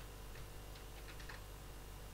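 Faint computer keyboard typing: a few light, separate key clicks, most of them bunched around the middle.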